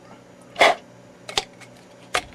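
A single short vocal sound, a huff or grunt rather than a word, about half a second in, followed by a couple of light clicks a moment later.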